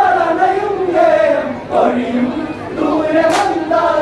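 A group of men chanting an Onamkali folk song together, loud phrases in unison.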